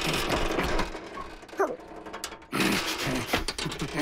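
Rattling, ratcheting mechanical noise from a toy pedal car being worked, in two long stretches, with short pug grunts between them and near the end.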